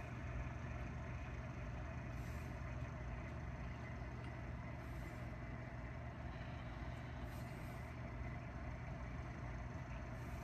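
Steady low hum with an even background hiss and no distinct events.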